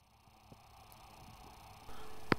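Very quiet background hiss that slowly swells, with one faint click about half a second in.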